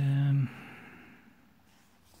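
A man's short hummed "hmm", held at a steady pitch for about half a second, then a fainter fading rustle as book pages are turned.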